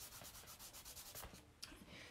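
Faint, quick rubbing, about six strokes a second, of a hand on a chalk-pastel drawing on paper, stopping about one and a half seconds in, followed by a single faint click.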